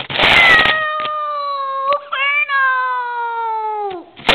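A short hissing burst of noise, then one long drawn-out meow that slides slowly down in pitch, breaks and jumps back up about halfway, falls further and cuts off suddenly.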